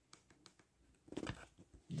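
Near-quiet room with a few faint clicks as the phone's volume is turned up. A short, soft, noisy sound comes about a second in.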